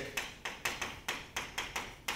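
Chalk writing on a blackboard: a quick run of sharp taps and clicks, about four or five a second, as the chalk strikes the board with each stroke of the letters.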